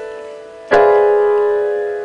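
Digital keyboard playing a piano sound: a held chord fading out, then a new chord struck about two-thirds of a second in and left to ring and decay.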